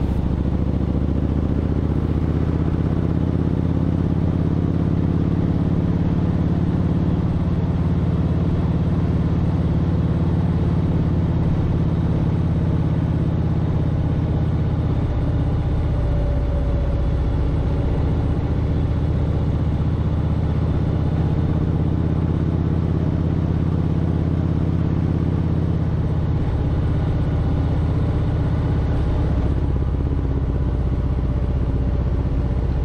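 Kawasaki Vulcan Voyager VN1700's V-twin engine running steadily under way, heard from the rider's seat as a constant low drone mixed with road and wind noise. The engine note shifts about halfway through.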